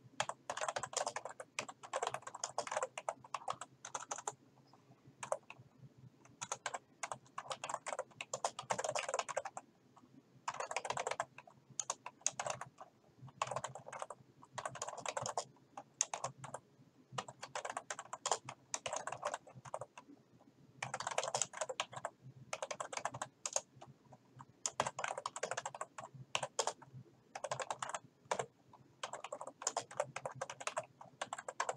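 Typing on a computer keyboard: fast runs of keystrokes broken every few seconds by short pauses.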